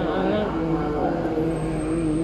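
A man's voice reciting the Quran in a melodic chant, holding long notes and sliding between pitches, over a steady low rumble.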